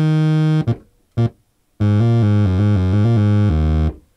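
Yamaha TG77 FM tone generator playing a very loud sawtooth-like tone from three operators, each fed back into itself to turn its sine wave into a near-sawtooth. A held note ends just under a second in and a short note follows. From about two seconds in comes a run of lower notes stepping in pitch, stopping just before the end.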